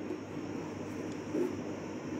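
Steady background hum and hiss of room noise, with no distinct event.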